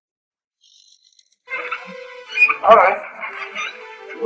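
Silence for about a second and a half, then background music with a voice comes in suddenly and carries on.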